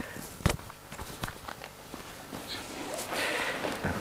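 A clip-on lapel microphone being handled and re-clipped onto a T-shirt: scattered knocks and clothing rustle picked up directly through the mic. The loudest knock comes about half a second in, and a longer rustle comes near the end.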